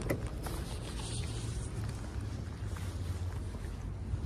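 Wind on the microphone: a steady low rumble with a fainter hiss above it, no distinct events.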